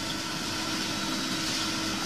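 Steady hiss with a constant low hum, the background noise of a police interview tape recording during a pause in the questioning.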